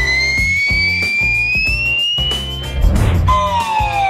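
Cartoon whistle sound effect gliding slowly upward for nearly three seconds, then a short swish and a falling whistle glide near the end: the comic cue for something tossed up and coming back down. Background music with a steady beat plays underneath.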